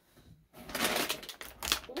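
Plastic packaging and a cardboard box rustling and crinkling as items are handled and pulled out, starting about halfway in and growing busy, with a few sharp crackles near the end.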